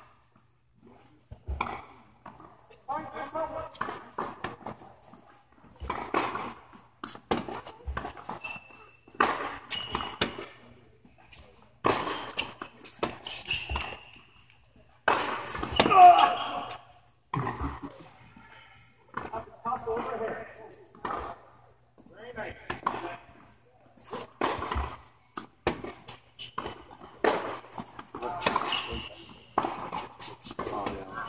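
Tennis rally on an indoor court: a racquet striking the ball and the ball bouncing, a sharp knock every second or two that echoes in the hall, with people talking under it.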